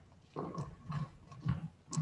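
Footsteps crossing a stage floor at a walking pace, about two steps a second.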